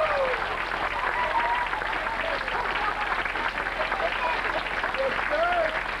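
Audience applauding throughout, with scattered shouts from the crowd, one short rising-and-falling call near the end.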